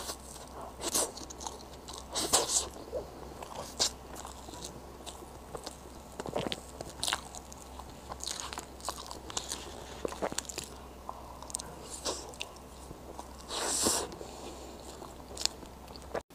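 Close-miked eating sounds of soft matcha mille-crêpe cake: sticky mouth clicks, smacks and chewing in irregular short bursts, with now and then a light scrape of a fork cutting through the cake on the plate.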